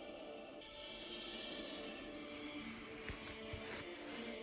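Quiet freestyle music with sustained held notes, and a few soft low thuds near the end.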